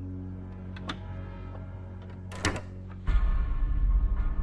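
Film soundtrack suspense music: a low sustained drone with a faint click and a brief noise, then a sudden loud, deep swell about three seconds in.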